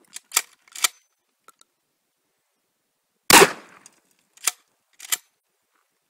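A 12-gauge shotgun fires once about three seconds in, a single loud shot with a short echo tail. Two sharp clacks of the action being cycled come just before the shot, and two more about a second after it.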